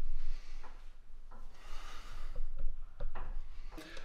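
A person working through pull-ups on a power-rack bar: two rushes of air about a second long, one near the start and one around the middle, with small knocks and rubbing from hands on the bar and the rack.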